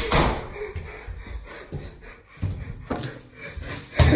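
Handling noise from a camera being moved about: a sudden thump at the start, then rustling with a couple of knocks about two and a half and three seconds in.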